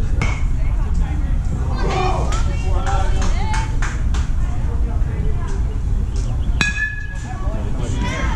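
A metal baseball bat hits a pitched ball about two-thirds of the way in: a sharp ping with a brief ringing tone after it. Before the hit, voices call out from the field and stands over a steady low rumble.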